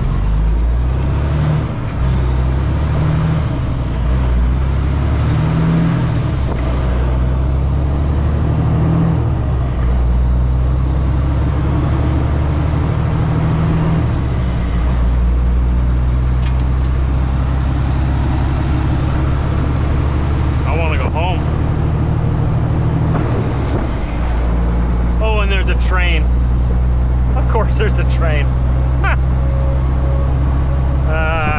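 Semi truck's diesel engine heard from inside the cab, pulling away and accelerating through several gear changes with the pitch climbing and dropping over the first dozen seconds or so. It then settles into a steady cruise.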